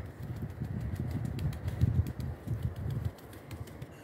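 A brush dabbing and patting wet cement onto a sculpture's surface to raise a fur-like texture: quick, irregular soft taps over low handling thuds, easing off about three seconds in.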